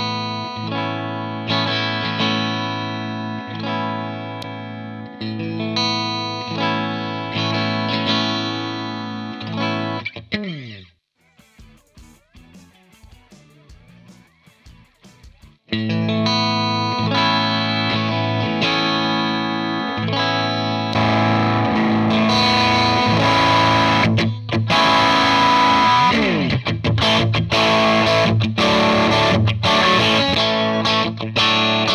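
Overdriven electric guitar through a Hughes & Kettner amp head, with the gain being turned up to see which amp has more of it. A passage of about ten seconds ends in a downward slide, then comes a pause of about five seconds with faint clicks. A second, louder passage follows and turns brighter and more distorted about 21 seconds in.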